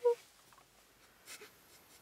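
A brief, soft voiced sound from a person right at the start, then a couple of quiet breaths.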